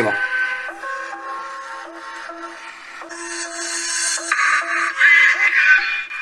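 Music from a YouTube video playing through the Cubot X20 Pro's mono loudspeaker at full volume. It sounds thin and tinny with no bass, and it gets louder and brighter about three seconds in. It is muddy and metallic, the sign of a poor phone speaker.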